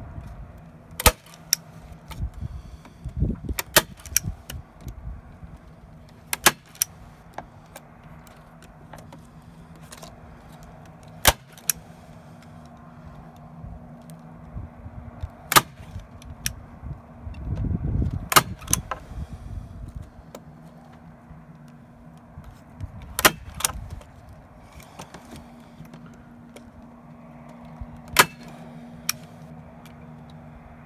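Manual staple gun driving staples through a plastic strip into a wooden sign backing, about ten sharp snaps spaced irregularly a few seconds apart. A low steady hum runs underneath.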